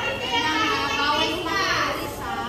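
Young children's high-pitched voices chattering, more than one at a time.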